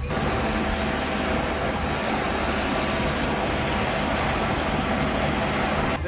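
Steady vehicle engine and road noise: an even low rumble under a hiss, starting and stopping abruptly.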